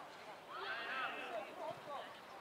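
Distant shouted calls of young footballers on the pitch, one rising-and-falling call starting about half a second in, followed by shorter calls.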